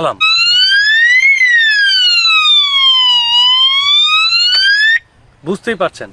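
Motorcycle anti-theft lock's alarm siren sounding: one tone that sweeps up, falls slowly, then rises again before cutting off suddenly about five seconds in.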